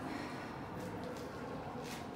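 Quiet ice-arena room tone: a steady low hum of the hall with faint, indistinct background noise.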